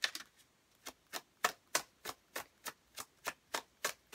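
Tarot deck being shuffled overhand by hand, each small packet of cards dropping onto the deck with a short click, about three a second, starting about a second in.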